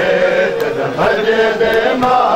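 A male voice chanting a noha, a Shia lament, in long held phrases; one phrase ends about halfway through and the next begins at once.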